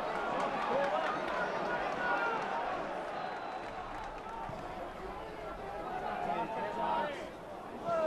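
Football stadium crowd noise: a steady murmur of spectators with a few scattered shouts.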